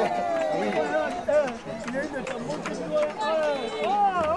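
Several people's voices calling out and exclaiming over one another, with scattered sharp knocks.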